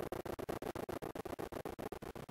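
Logo music slowed down heavily, reduced to a low held tone chopped by rapid dropouts about a dozen times a second into a stuttering, scratchy buzz.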